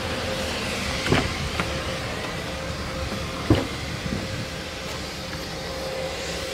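Rear door of a Ford Super Duty pickup being opened: a few short clicks and knocks, the loudest about three and a half seconds in, over a steady background hum with a faint whine.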